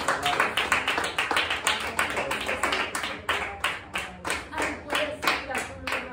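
Several people clapping their hands in a quick steady rhythm, about four to five claps a second, with voices underneath. The clapping thins out near the end.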